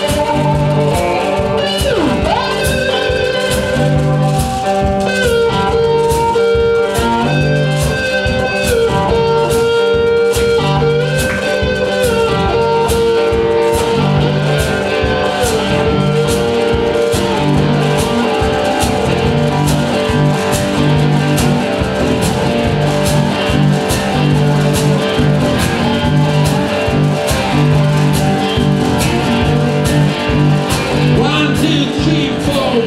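Three-string cigar box guitars, amplified, playing an instrumental passage over a steady beat. The lead line slides between notes near the start.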